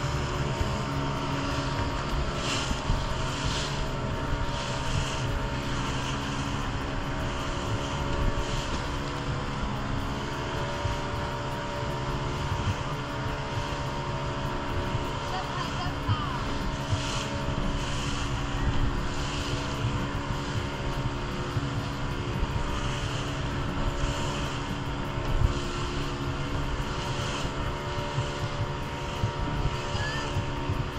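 Small motorboat's engine running steadily at cruising speed, a constant drone with a low rumble, with repeated splashes of water against the hull as the boat crosses choppy sea.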